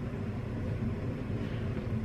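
Steady low background hum with no other events.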